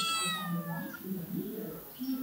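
A cat meowing: one drawn-out, high call that falls slightly in pitch and fades out within the first second, with a person's low voice underneath.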